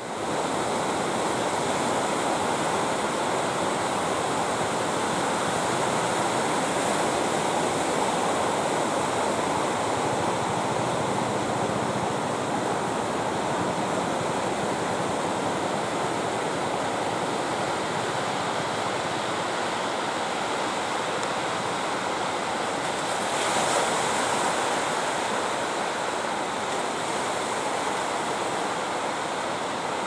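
Ocean surf breaking on a beach: a steady wash of waves, swelling briefly a little past two-thirds of the way through.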